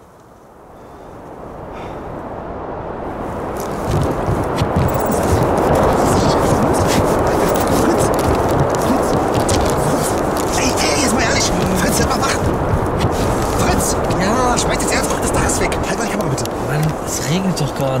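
Strong wind roaring over the small house, building up over about four seconds and then staying loud; it is the gale that tears off the toy house's roof. Voices shout faintly near the end.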